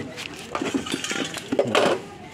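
Light metallic clinks and rattles from tools and cable clips being handled, with a louder clatter near the end.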